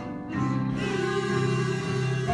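A group of young children performing a Christmas number in unison, mostly long held notes that change pitch about a third of a second in and again near the end.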